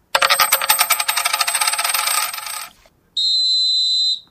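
A rapid run of bright metallic clinks lasting about two and a half seconds, like a cascade of coins, then a steady high electronic beep for about a second.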